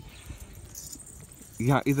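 Faint jingling from the goats' decorated collars amid a milling goat herd, then a man's voice calls out briefly near the end.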